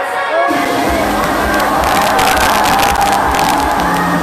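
Live K-pop concert music with sung vocals and a steady bass line, under crowd cheering. About half a second in, a sudden noisy rush of hiss joins the music and stays, and it turns crackly between about two and three seconds in.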